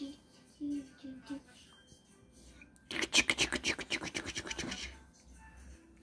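A person's voice: a few short vocal sounds, then a loud fast run of clicking, rapid vocal sounds about three seconds in that lasts nearly two seconds.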